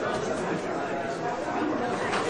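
Many voices chattering at once: a general murmur of students talking among themselves in a lecture hall.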